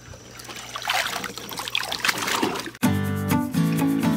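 Pool water splashing and trickling around a child on a pool ladder. About three seconds in, background music starts abruptly.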